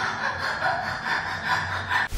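A woman laughing hard in repeated bursts, about two or three a second.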